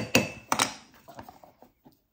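A wooden spoon and a cocoa tin handled over a mixing bowl: a few light knocks in the first half-second or so, then dying away.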